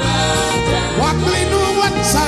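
A live gospel band playing an old Ewe song, with a man singing the lead over the band.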